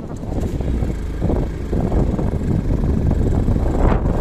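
Wind noise on the microphone of a moving motorbike, mixed with the bike's engine and road noise; it grows a little louder after the first second.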